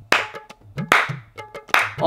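One person clapping hands slowly in mock applause: three main claps a little under a second apart, with lighter claps between them.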